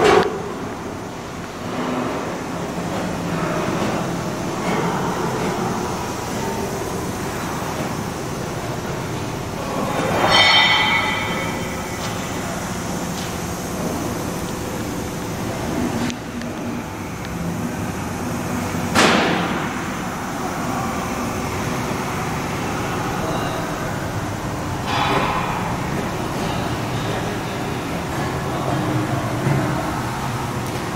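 Steady machinery rumble and hum echoing in a steel engine room, broken by a few metallic clanks and a short squeal about ten seconds in.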